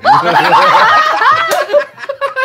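A group of several people laughing loudly together, their laughs overlapping, thinning out near the end.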